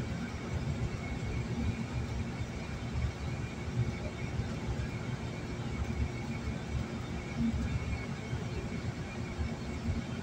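Steady road and engine rumble of a car driving at highway speed, heard from inside the cabin, with a faint steady tone over it.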